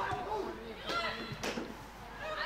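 Faint voices talking in the background, well below the level of close speech, with two short sharp knocks about a second and a second and a half in.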